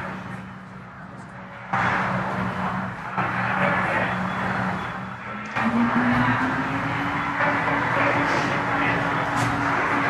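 Background of the mission-control communications loop with no one talking: a steady electrical hum with a hiss of static that comes up about two seconds in. About halfway through, a low tone slides up in pitch and then holds.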